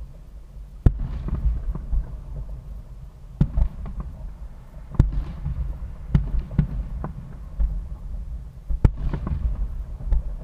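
Aerial fireworks shells bursting in a string of sharp, echoing bangs, about one every second or two. The loudest come about a second in, at five seconds and near the end.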